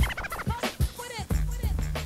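Music: the instrumental tail of a 1990s hip-hop track, with turntable-style scratch sounds and short warbling pitch glides over sharp clicks, then a steady low bass note from a little past halfway.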